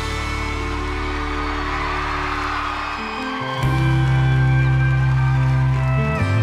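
A band plays an instrumental stretch of a slow country song with sustained held chords. About three and a half seconds in it gets louder as new deep bass notes come in.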